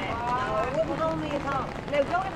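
Passers-by talking on a city street, several voices overlapping, with footsteps.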